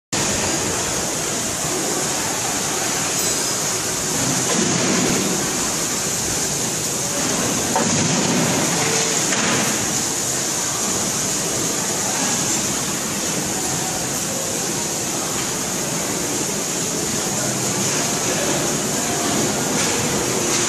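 Steady machine noise with a high hiss from a large horizontal stator coil winding machine running on a factory floor, with no distinct rhythm and a couple of mild swells in level.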